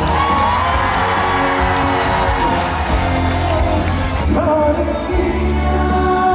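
Male trot singer singing live into a handheld microphone over loud amplified backing music, holding one long note near the start.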